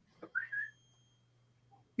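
A puppy giving one short, high whine about half a second in, rising then holding briefly, faint, after a small click.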